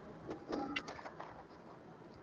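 A faint, brief bird call about half a second in, heard over low room noise with a few faint clicks.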